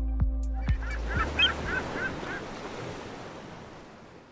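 Background music ends in the first second, giving way to a wash of ocean surf with a quick string of about eight short bird calls; the surf fades out toward the end.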